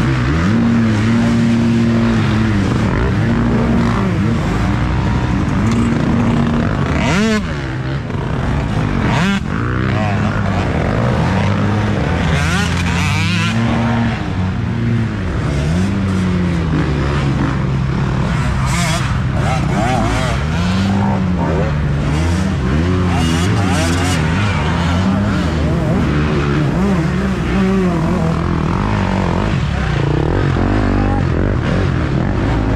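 Several off-road dirt bike engines revving up and down as riders pass close one after another, the pitch rising and falling again and again.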